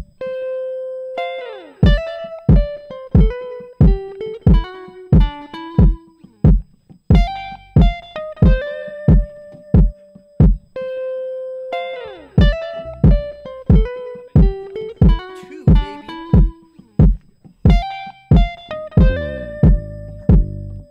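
Electric guitar playing a melodic line over a programmed drum beat with a steady kick about twice a second. Low bass notes come in near the end.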